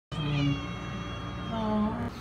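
A domestic cat meowing: a long drawn-out meow on a nearly steady pitch, then a shorter one starting about one and a half seconds in.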